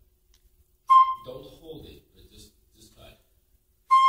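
A flute sounds one short, loud note about a second in that dies away quickly, followed by quiet talk. A held flute note begins just before the end.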